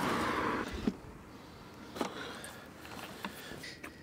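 Wooden box easel being set up: a rustle at first, then a few separate sharp clicks and knocks as its sliding wooden legs and fittings are adjusted.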